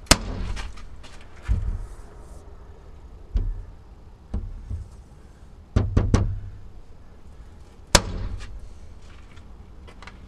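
A series of sharp knocks or bangs on an old wooden door: single hits a second or two apart, a quick run of three just before the middle, and a last loud hit near the end.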